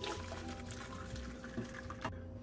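Hot broth pouring from a bowl into a stainless-steel bowl of noodles, a quiet, steady splashing pour.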